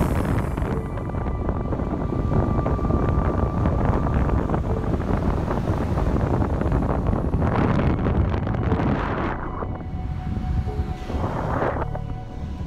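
Electric longboard on all-terrain wheels riding over asphalt: steady road and wheel rumble with wind buffeting the microphone, growing louder about seven and a half seconds in and again near the end.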